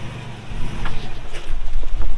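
2006 Toyota 4Runner's 4.7-litre V8 pulling at crawling speed over rocks. The engine note swells about half a second in and again near the end, with a couple of short knocks in between.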